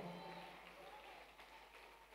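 Near silence: faint room tone in a pause between spoken phrases.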